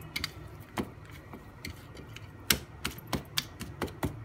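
Irregular light clicks and taps of a hand working dough in a glass bowl, fingers and dough knocking against the glass, with the sharpest knock about two and a half seconds in and a quick run of taps after it.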